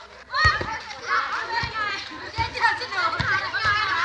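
Many high-pitched voices shouting and calling out over one another during a volleyball rally, lively and continuous, with a few dull thumps mixed in.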